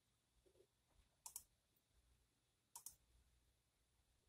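Near silence broken twice by a faint, quick double click of a computer mouse, the two double clicks about a second and a half apart.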